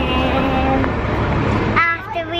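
A steady low rumble of outdoor noise. Near the end a young boy's voice starts singing.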